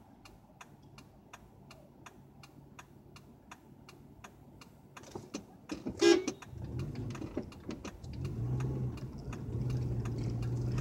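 Turn-signal relay ticking steadily inside a car cabin, about two and a half clicks a second. About six seconds in, a short car horn beep, then the engine note rises as the car pulls away.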